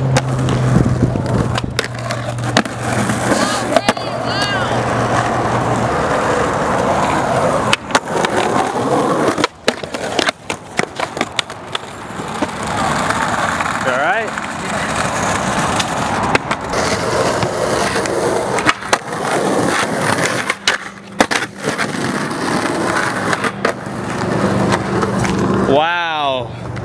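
Skateboard wheels rolling over asphalt, with several sharp clacks of the board striking the ground.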